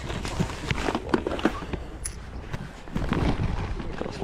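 Handling noise: a plastic game case clicking and knocking as it is packed into a woven plastic shopping bag, with the bag rustling, over a steady low rumble.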